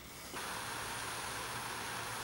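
Handheld butane torch flame hissing steadily, starting about a third of a second in, as it heats a small rocket engine to light it.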